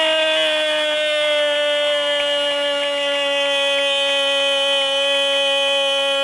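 A radio football commentator's long goal cry, one 'gol' held as a single loud, unbroken note that slowly sinks a little in pitch, calling a goal just scored.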